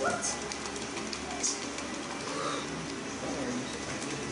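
Indistinct background chatter in a room, with a few light clicks from playing cards being handled, the sharpest about a second and a half in.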